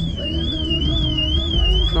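Car alarm siren on a Nissan 370Z Nismo going off: one high tone warbling up and down, about three sweeps a second. Background music with a heavy bass plays underneath.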